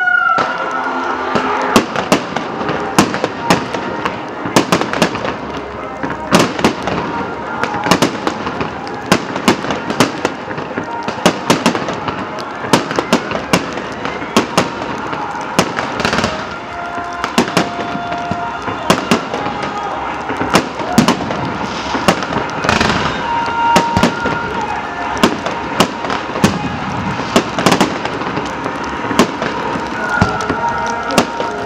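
Fireworks display: a dense, irregular run of loud bangs and crackles from aerial shells bursting overhead, sometimes several a second.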